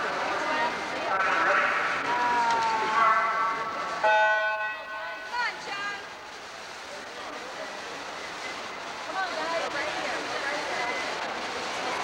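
Electronic swim-race starting horn sounding once about four seconds in, a steady buzzing tone about a second long that starts suddenly. Before it, voices echo around the indoor pool; after it come splashing and spectators' voices as the race gets under way.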